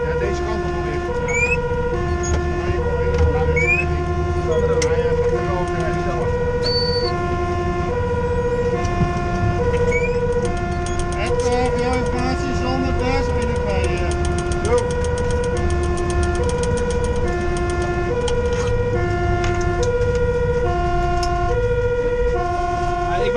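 Fire engine's two-tone siren alternating steadily between a high and a low note, each held a little under a second, heard from inside the cab over the truck's engine and road rumble.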